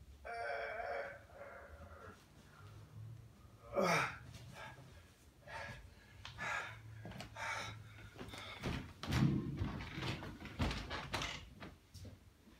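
Large cardboard shipping box being opened and handled: flaps and packing scraping and rustling, a short falling squeak about four seconds in, and the heaviest thumps from about nine to eleven seconds in.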